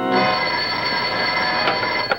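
Desk telephone bell ringing continuously, cutting off near the end as the handset is lifted with a sharp clack.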